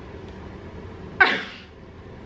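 A person's single short, sudden shouted "yeah" about a second in, over low room sound.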